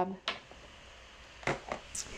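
A few light clicks and taps from craft supplies being picked up and handled on the desk: one just after the start, then a quick cluster about a second and a half in.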